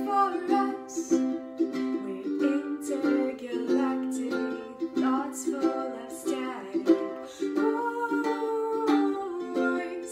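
Ukulele strummed in a steady rhythm, ringing chords in an instrumental passage without singing.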